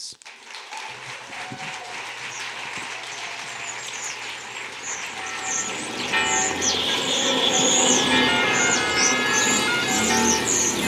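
Audience applauding, growing louder, with recorded theme music starting about six seconds in and playing over the clapping.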